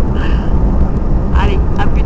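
A car driving at speed, heard from inside the cabin: a loud, steady low rumble of road and wind noise, with brief bits of voice about a second and a half in.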